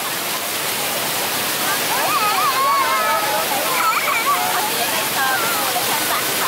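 Ground-level fountain jets gushing and splashing onto wet pavement in a steady hiss, with high-pitched children's voices calling out over it, busiest from about two to five seconds in.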